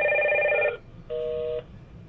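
Hikvision video intercom indoor station sounding its electronic call ringtone during an extension-to-extension call: a steady tone of several pitches for about a second, then a shorter, quieter one.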